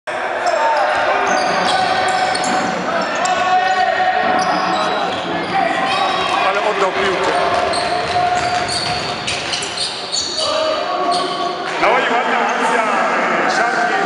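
Basketball game on an indoor court: the ball bouncing, sneakers squeaking on the floor in short high chirps, and players' shouts, all echoing in a large sports hall.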